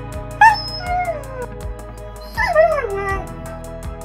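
A dog whining twice, each a pitched cry that falls in pitch, the second about two seconds after the first, over background music with a quick ticking beat.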